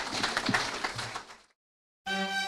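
Audience applauding, a dense patter of many hands clapping, which fades out after about a second and a half.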